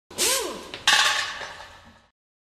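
Logo sting sound effect: a whoosh with swooping pitch sweeps, then a sharp hit a little under a second in that fades away over the next second.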